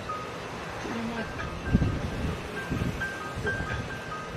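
Faint music of short, high, chime-like notes that alternate between two pitches, starting about a second and a half in, over a low rumble of wind on the microphone.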